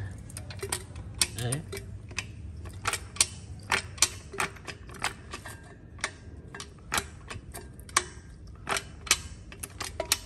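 Sharp metallic clicks, irregular at about one or two a second, from the gearbox of a removed Honda Super Dream motorcycle engine being shifted through its gears by hand. The gears go in cleanly, which is taken as a sign of a gearbox in good order.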